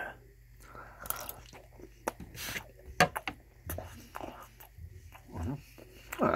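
Close-miked chewing of a mouthful of buffalo chicken stromboli, with wet mouth clicks and smacks scattered irregularly throughout and one sharp click about halfway through.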